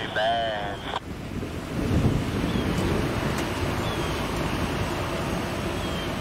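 GE ES44C4 diesel locomotives with V12 engines running as they pull slowly past, a low steady rumble that swells about two seconds in and then holds. A brief warbling sound in the first second cuts off suddenly.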